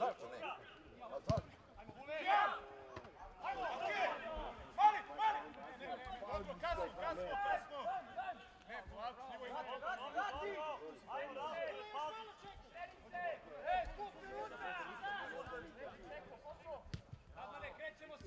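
Men shouting in Serbian across a football pitch, several voices calling out in overlapping bursts. Two sharp knocks of a football being kicked stand out, about a second and a half in and about a second before the end.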